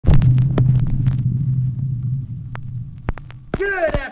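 Low, steady hum with a few sharp clicks, fading out over about three seconds; a man starts speaking near the end.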